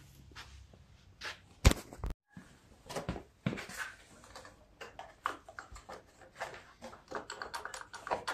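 Scattered clicks and light knocks of hands handling plastic and metal parts on a small snowblower engine during carburetor removal, with one sharp click about a second and a half in and a brief gap in the sound just after.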